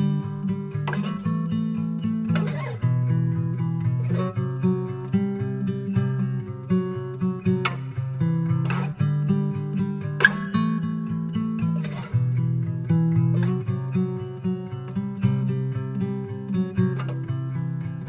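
Instrumental intro of a song: acoustic guitar strumming chords over steady low notes, with sharp accents every second or two, before the vocals come in.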